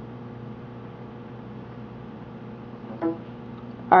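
Steady electrical hum, and about three seconds in a short tone from the computer's device-connect chime, the Windows signal that the iPod has reconnected in DFU mode.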